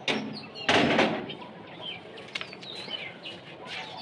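Small birds chirping in the background with short, high twittering calls, and a brief burst of noise about a second in.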